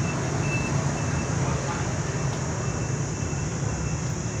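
A steady low hum with a hiss of outdoor background noise, and faint short high-pitched beeps coming and going.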